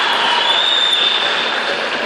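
Crowd noise from a large arena audience: a steady wash of cheering and applause, easing slightly toward the end, with a thin high steady tone running through it.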